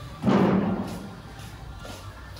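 A single heavy thump about a quarter second in, ringing away over the next second.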